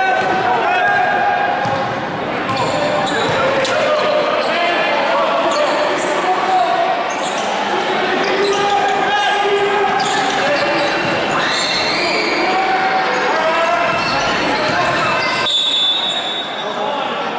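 Basketball game in a sports hall: the ball bouncing on the court floor as it is dribbled, with spectators' voices and shouts echoing in the hall. A high whistle sounds near the end, typical of a referee's whistle stopping play.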